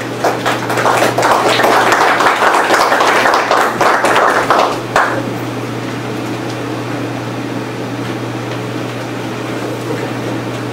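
A small group of people applauding for about five seconds, ending fairly sharply, with a steady low hum underneath.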